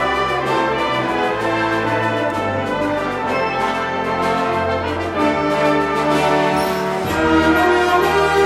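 Concert wind band playing, with brass carrying sustained chords over held low bass notes, growing a little louder near the end.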